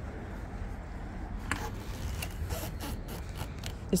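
Travel trailer entry door being unlatched and pulled open, with a few light clicks and scraping of the latch and door. A steady low rumble sits underneath.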